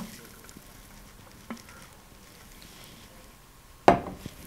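Quiet room with a faint click about a second and a half in, then a single sharp knock near the end as a tumbler is set down on the table.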